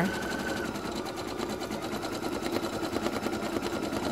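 Baby Lock Flourish embroidery machine stitching lettering onto linen: the needle runs at a fast, even rhythm of rapid ticks.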